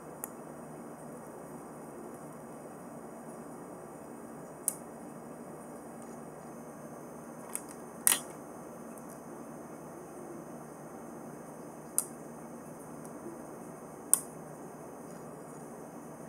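Scattered sharp clicks of gemstones being picked up and set down on glass, about six in all, the loudest a little past the middle, over a steady low room hiss.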